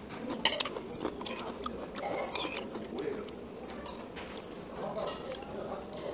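Metal spoons and chopsticks clicking against earthenware soup bowls, with chewing, as two people eat soup. Faint chatter runs underneath.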